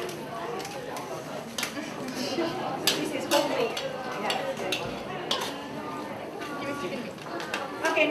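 Metal spatula scraping and clinking against a steel wok as food is stirred and tossed, giving a few sharp clinks at irregular moments.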